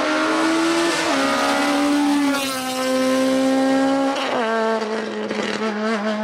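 Honda Civic hill-climb race car's four-cylinder engine pulling hard on full throttle. Its pitch climbs steadily and then drops sharply at three upshifts, about one, two and a half, and four and a half seconds in.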